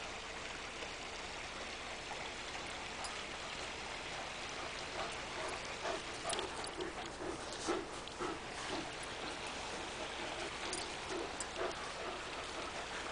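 An Irish Wolfhound breathing hard close by, a run of short huffs about three a second starting around halfway through, over a steady hiss.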